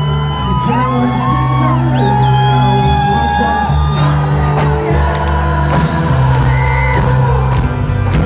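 Loud live pop-rock band music: held bass notes under high, gliding wordless vocal lines.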